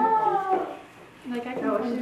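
A drawn-out voice at the start, falling in pitch and fading within about half a second, followed by a brief lull and then quiet, low talk.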